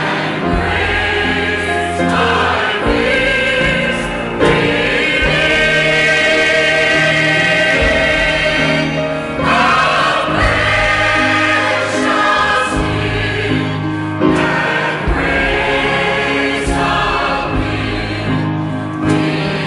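Church choir of men and women singing a hymn in long held chords.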